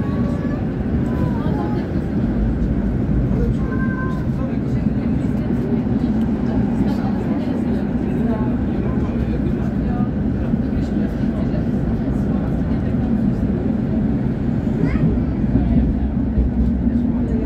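Tram running along street rails, a steady low rumble heard from inside the car, with indistinct voices in the background.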